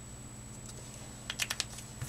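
A few quick, sharp plastic clicks of Promarker alcohol markers being handled and capped as one marker is swapped for another, starting about a second and a half in, over a faint steady hum.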